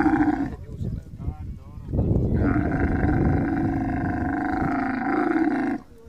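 Dromedary camel calling with its mouth open: the tail of one long call, a short rougher break, then a second long call of nearly four seconds that cuts off abruptly near the end.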